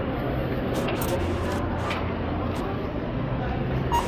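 Steady low hum of a busy supermarket with indistinct voices and faint plastic-bag rustles. Just before the end comes one short beep from the self-checkout's barcode scanner as an item is scanned.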